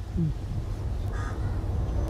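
Steady low outdoor background rumble, with a brief voice sound just after the start and a faint, short bird-like call about a second in.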